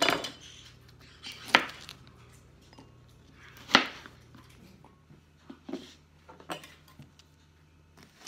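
Kitchen knife chopping Brussels sprouts on a plastic cutting board: a few sharp knocks of the blade hitting the board, the loudest about a second and a half in and just before four seconds, then softer, quicker taps near the end.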